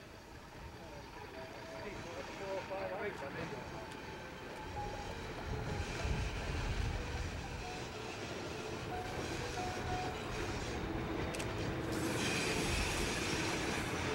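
Alco RS11 diesel-electric locomotive approaching along the track, its engine and wheels growing steadily louder as it nears.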